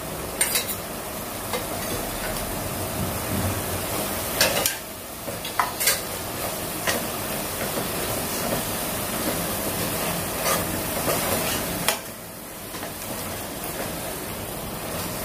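Onion and tomato masala sizzling in a metal pressure cooker pan while a spatula stirs it, scraping the pan with a sharp click now and then. The sizzle drops off a little near the end.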